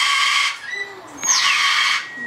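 Parrots screeching: two loud, harsh squawks, one right at the start and a longer one from about a second in.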